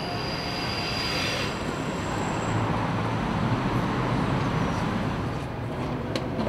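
Passing traffic: a steady rumbling hiss that swells in the middle, with a thin high whine in the first second and a half.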